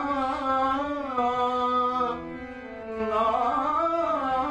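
A man singing a slow, ornamented line in South Asian classical style, with the pitch sliding and wavering, over a harmonium. The voice drops back about two seconds in, then comes in again.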